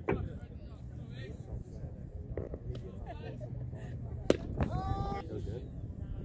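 A single sharp pop of a baseball smacking into a leather glove about four seconds in, the loudest sound here, followed by a drawn-out shout. Spectators chat throughout.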